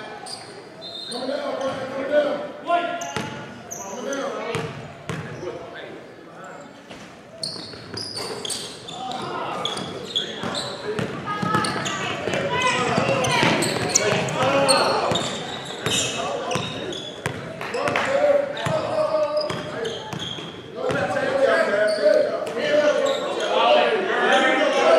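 Basketball bouncing on a hardwood gym floor amid players' and spectators' shouts, echoing in a large gym. The voices grow louder about halfway through and again near the end.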